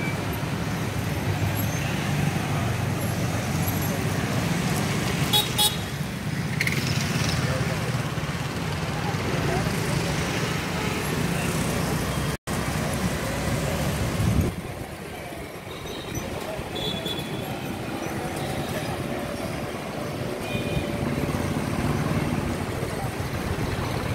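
Light street traffic, mostly motorbikes and scooters, running past, with a low rumble throughout and a few short horn toots. The sound drops out briefly about halfway through, and the second half is a little quieter.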